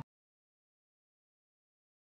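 Silence: the sound cuts out completely, with no sound at all.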